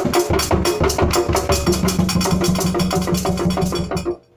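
Carved wooden hand drums and a mounted block played together in a fast, steady rhythm of about eight strokes a second, which stops suddenly at the very end.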